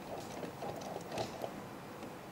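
Faint handling noises as a hand presses down on the chassis of a 1/10-scale RC truck, working its coil-spring suspension, with a few soft ticks, the clearest about a second in.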